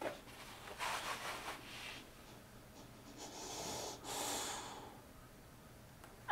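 Boxer dog breathing, with a few breathy snorts and huffs through its short nose, the longest one about four seconds in.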